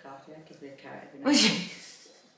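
A woman's voice: soft sounds, then one short, loud vocal burst with a falling pitch a little past a second in.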